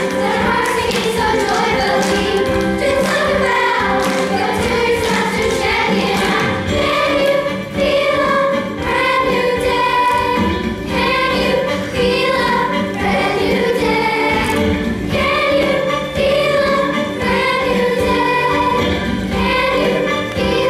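Elementary-school children's choir singing together, the voices held and continuous throughout.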